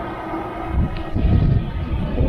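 Wind buffeting the camera microphone: an irregular low rumble that gets stronger about a second in.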